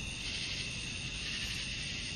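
Steady background hiss with a high band running through it and no distinct sounds standing out.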